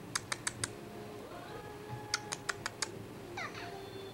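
Two quick runs of sharp clicks, four or five in each at about six a second: one at the start and one about two seconds in.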